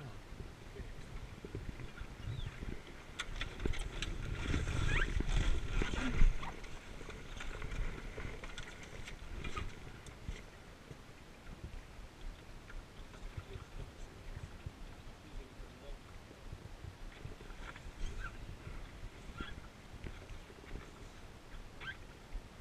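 Wind buffeting the microphone and water against the hull of a wooden Scorpion sailing dinghy, with rustling and knocks of gear and clothing. The buffeting swells a few seconds in and ends with a sharp knock about six seconds in.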